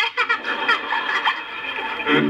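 A woman laughing loudly, in a run of short, jerky bursts.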